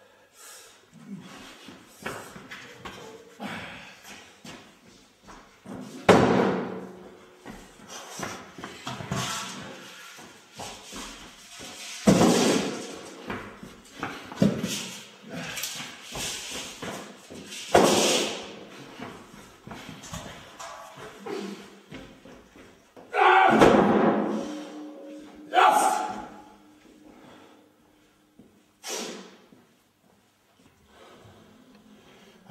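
Heavy round training stones of about 90 kg set down or dropped onto a concrete floor, giving a series of loud thuds about every six seconds, with a man's effortful grunts and hard breathing between the lifts.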